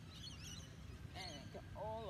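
Faint high bird chirps over a low, steady outdoor background noise, with a short pitched call near the end.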